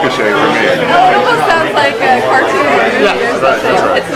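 Speech only: a man and a woman in conversation.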